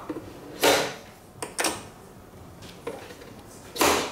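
Plastic clatters and clicks of a capsule coffee machine being handled and loaded for a coffee: a short clatter about half a second in, another near the middle of the second second, small clicks after, and a louder clatter just before the end.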